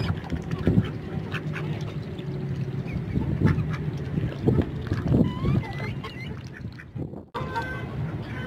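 Domestic ducks quacking low and hoarsely while they feed, with short clicks and knocks of pecking among them; the sound breaks off sharply near the end.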